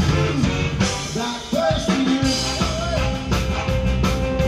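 A live rock band playing: drum kit, keyboards and electric bass, with a man's voice singing. The low end thins out briefly about a second in before the full band comes back in.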